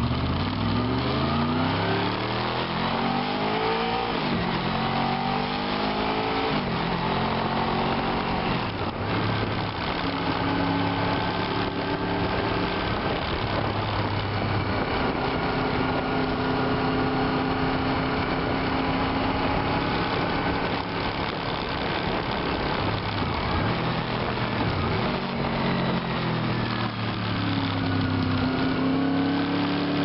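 Sport motorcycle engine pulling hard through the gears: its pitch climbs and drops back at each upshift in the first several seconds, then holds steady at highway cruising speed, eases off and picks up again near the end. Wind rushes past throughout.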